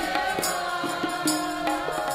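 Sikh kirtan: a group of women singing a shabad together, with held harmonium chords and a tabla beating out quick strokes under the voices.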